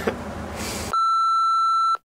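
A laugh over room noise, then, about a second in, a steady electronic beep of a single pitch that lasts about a second and cuts off suddenly into dead silence.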